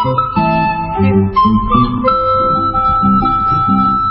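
A flute playing a slow melody of long held notes over a plucked guitar accompaniment with a steady pulse.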